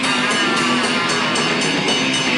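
A loud live rock band with distorted guitar and cymbals, a singer screaming into a microphone over a sustained wash of sound.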